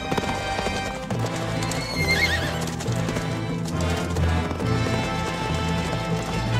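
Horses galloping, their hooves clip-clopping, with a horse whinnying about two seconds in, all over music.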